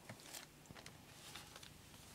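Near silence, with a few faint, soft rustles of paper and a plastic packet being handled.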